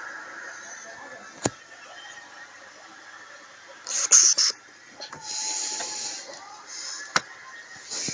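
Rustling and rubbing close to the microphone, in bursts about four seconds in and again a second later, with two sharp clicks, over a faint steady hiss.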